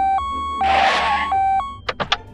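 Two-tone emergency siren alternating between a high and a low note about three times a second, with a brief whooshing hiss over it about halfway through and a couple of sharp clicks near the end.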